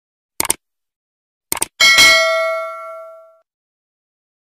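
Subscribe-button sound effect: a mouse click, a quick double click about a second and a half in, then a bell ding that rings with several tones and fades out over about a second and a half.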